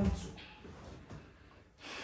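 A person breathing sharply: a short breath just after the start and another audible breath shortly before the end.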